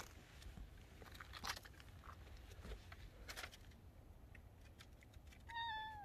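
A domestic cat gives one short meow near the end, after a mostly quiet stretch with a few faint clicks.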